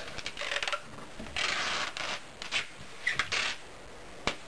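Packing tape pulled off the roll in several rasping pulls and pressed onto the closed top of a cardboard wardrobe box, with the cardboard rubbing. The longest pull comes about one and a half seconds in.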